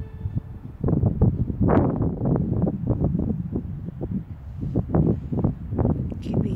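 Wind buffeting the camera's microphone: an uneven, gusting rumble that starts about a second in and keeps surging.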